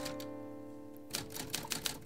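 Soft film score of held notes, with a few sharp typewriter key strikes, one near the start and several in the second half.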